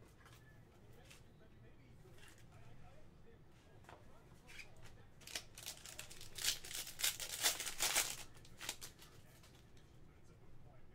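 Foil wrapper of a Panini Prizm football card pack being torn open by hand: a crinkly ripping made of several quick tears over about three seconds, starting about halfway in.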